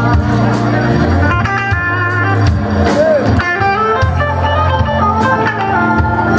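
Live blues band playing, with electric guitar lines over bass guitar and drums.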